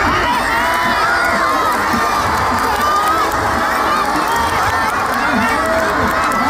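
Large crowd of men and boys shouting and cheering, many voices overlapping at a steady, loud level.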